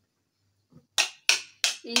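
Roasted potatoes being mashed by hand in a plastic bowl: sharp squelching squishes about three a second, starting about a second in after a near-silent pause.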